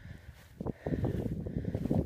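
Wind buffeting the microphone in a low, gusty rumble that picks up about half a second in.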